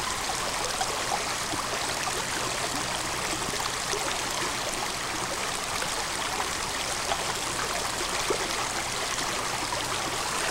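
Stream water flowing steadily.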